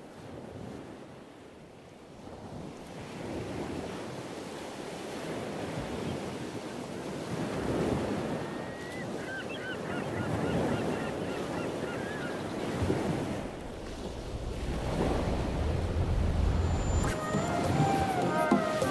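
Ocean waves breaking, fading in from silence and surging and ebbing every few seconds, with a few birds calling in the middle. Music comes in near the end.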